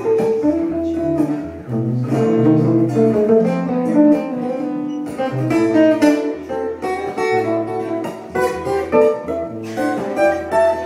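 Dean Exotica RSE acoustic guitar playing an improvised bossa nova–tango with steel strings picked. Quick melodic notes run over held bass notes, layered through a Boss DD-20 delay/looper.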